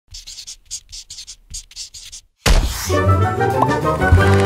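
Title-card sound effects: a quick run of pencil-scribbling strokes, about four a second, then a short pause and, about two and a half seconds in, a loud thump with a bright musical chord that rings on.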